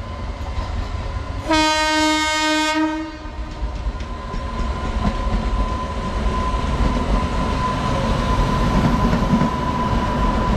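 Horn of an approaching pair of Indian Railways WAG-9 electric locomotives: one blast of just over a second, about one and a half seconds in. Then the rumble of the locomotives on the rails grows louder as they near, with a steady high whine over it from about six seconds.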